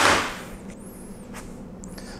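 A sharp clack as an object is set down, followed by a short rustle, then quiet room tone with a few faint taps.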